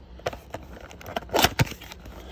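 Topps blaster box of trading cards being ripped open by hand: packaging crinkling and crackling in small ticks, with one louder rip about one and a half seconds in.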